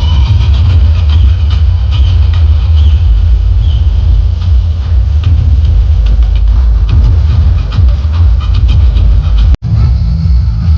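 Music from a DJ sound-system truck played very loud, dominated by heavy, continuous low bass that overloads the recording. It drops out for an instant near the end.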